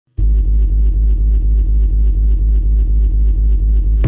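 Loud, steady low rumble of a car engine heard from inside the cabin, starting abruptly and holding unchanged.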